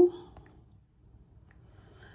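A few faint, sparse clicks of fingertips typing on an iPad's on-screen keyboard, after the end of a spoken word.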